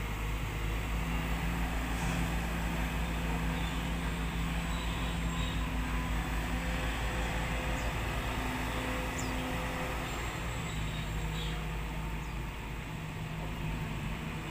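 Diesel engine of a long-reach amphibious excavator running steadily as it swings its boom and digs river mud, a low engine hum whose note shifts a few times as the hydraulics take load.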